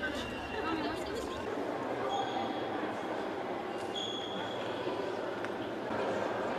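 Crowd chatter: many people talking at once in a steady murmur, with two brief high tones about two and four seconds in.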